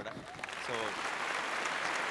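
Audience applause, growing over the first second and then holding steady.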